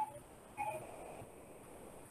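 Pause in a man's speech: faint room tone, with a brief faint pitched sound about half a second in.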